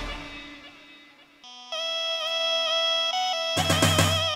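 Wedding band music: the previous tune dies away, then one held note with a slight wobble sounds for about two seconds. Drums and the full band come in near the end, starting the next tune.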